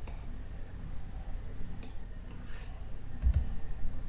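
Computer mouse button clicking three times, each a short sharp click, spaced about a second and a half apart.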